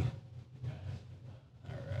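A pause in the talk filled by a low steady hum, with a man's voice starting up again near the end.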